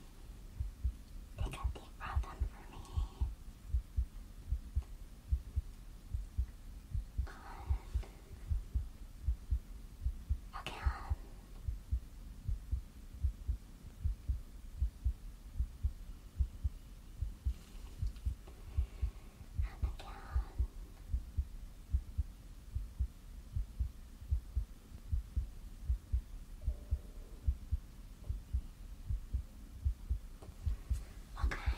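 Heartbeat heard through a stethoscope: steady, regular low thuds with a muffled quality.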